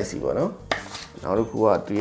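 Someone talking, with a single sharp clack about a third of the way in as the phone's cable and packaging are handled.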